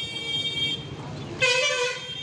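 Vehicle horns honking in street traffic: a fainter, higher steady tone that fades out within the first second, then a louder short honk about one and a half seconds in, over a steady low traffic rumble.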